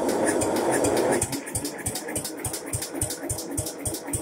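Lawn tractor engine being cranked over by its starter-generator with the choke on, without firing: a rougher first second, then an even chugging of about five compression strokes a second.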